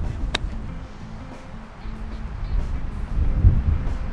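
A golf iron striking a ball off the fairway: one sharp click about a third of a second in.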